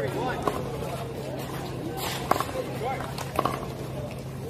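People talking indistinctly in the background, with a few sharp smacks, the clearest about two and a third seconds in and another about a second later.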